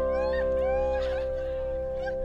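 A person imitating a cat's meow in short rising-and-falling cries, over background music with held chords.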